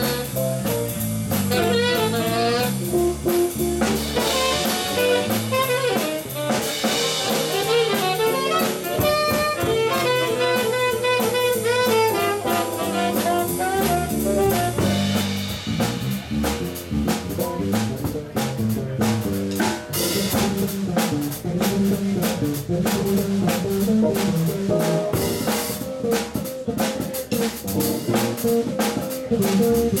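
Live small-group jazz: saxophone melody lines over electric bass guitar and drum kit. In the second half the cymbals and drums grow busier under a steady bass line.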